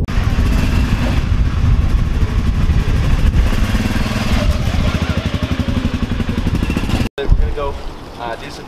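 Gravely Atlas utility vehicle's engine running as the side-by-side pulls away, a dense low sound with even firing pulses that grow plainer over the second half. It cuts off suddenly about seven seconds in.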